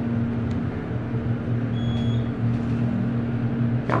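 Schindler passenger elevator car travelling up, a steady hum from the drive with a low rumble underneath; the hum stops just before the car arrives at the floor. A short high beep sounds about halfway through.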